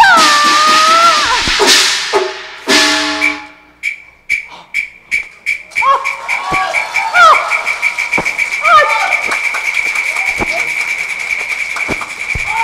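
Cantonese opera stage percussion and voice. A wavering vocal cry is followed by two loud crashes and a run of strokes that speed up. Then comes a fast, even high-pitched percussion roll with short vocal cries over it, the stage music backing a dramatic action.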